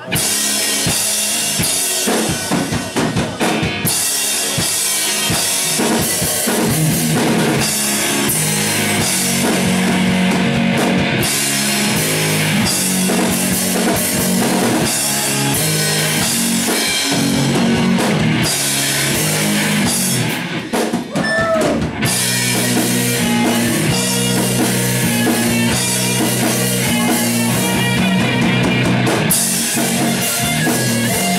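Live rock band playing loud, with electric guitar, bass guitar and drum kit. About two-thirds of the way through the sound thins out in a short break, then the full band comes back in.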